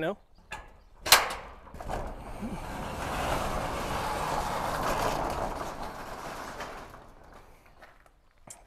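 Metal roll-up shop door being opened: a sharp metallic clack about a second in, then the steel door running up for about five seconds with a steady rumbling noise that slowly fades.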